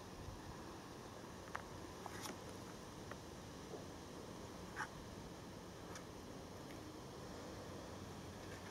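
Quiet background hiss with a few faint, brief ticks and drips as fingers pick duckweed bits out of a bucket of pond water.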